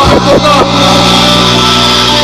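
Live rock band with electric guitars, bass and drums: a sung or shouted vocal line in the first half second or so, then the band holds a steady sustained chord.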